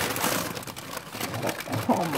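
Brown kraft wrapping paper crinkling and rustling as it is handled and pulled off a parcel.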